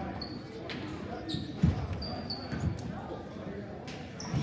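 A basketball bouncing on a hardwood gym floor: a few separate thuds, the loudest about a second and a half in, with short high squeaks from sneakers on the court and voices around the hall.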